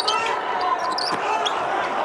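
Game sound from a basketball court: a ball dribbling on the hardwood, with players' voices and a few short high squeaks, in an arena with almost no crowd.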